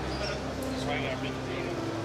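Indistinct chatter of people in a large indoor hall over a steady low hum.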